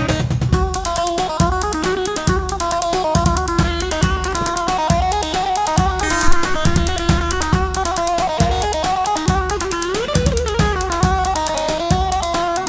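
Live halay dance music: a plucked bağlama melody over a steady, evenly spaced drum beat from a davul.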